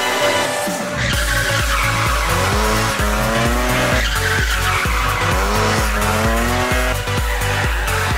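Rally car engine revving up and down through corners, with tyre skidding. It is mixed under music with a heavy, steady beat that starts about a second in.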